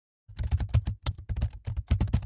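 Typing sound effect, a quick run of keyboard keystrokes clicking about eight to ten times a second, beginning about a quarter second in.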